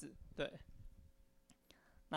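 A man's speech trailing off into a pause: a word ends, a short breathy whisper follows, then near silence with two faint clicks near the end.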